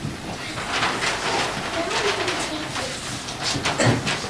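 Children's voices mixed with the rustling and knocking of large cardboard and paper stage props being handled.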